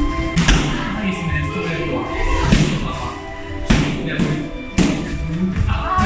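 Gloved punches and kicks thudding into a trainer's kickboxing pads and body protector, three sharp hits in the second half about a second apart, over background music and voices.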